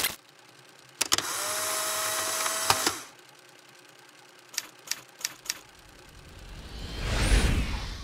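Edited sound effects: a click, then about two seconds of buzzing hiss with a steady hum, cut off by another click; a few short clicks about halfway through; then a whoosh that swells toward the end.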